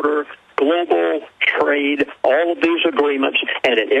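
Speech only: a man talking continuously, with narrow, radio-like sound.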